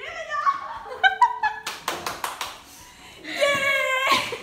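Young women's voices laughing and shrieking without words, with a quick run of hand claps about two seconds in and a long, high held shout near the end.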